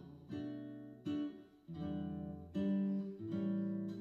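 Acoustic guitar played solo: about five chords struck one after another, each left to ring and die away before the next.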